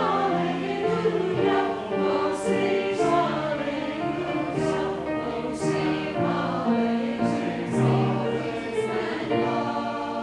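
Mixed church choir of men and women singing, moving through a series of held notes with clear hissing consonants.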